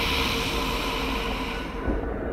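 A long breathy, hissing exhale, a sighing sound effect, fading out over nearly two seconds over a low, steady dark music drone.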